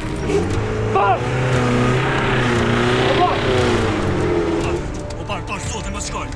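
A car engine running and revving, easing off about three-quarters of the way through, with a man's short shouts over it.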